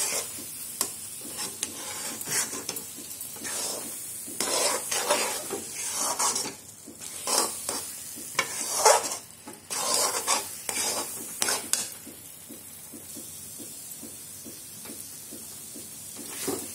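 A metal spoon stirring and scraping a thick grated-coconut burfi mixture around a metal kadai over the heat, with a soft sizzle underneath. The irregular scraping strokes and clicks ease off after about twelve seconds, leaving a quieter, steady hiss. The mixture is in its last stage of cooking down until it is thick and ready.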